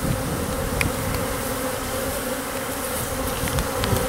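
Honey bees buzzing in a steady, even hum around an open hive, just after being shaken out of a jar over their caged queen.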